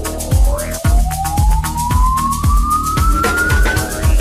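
Funky house music with a steady kick drum about twice a second, and over it one long tone that glides slowly upward like a siren and stops just before the end: a rising sweep in a DJ mix's transition.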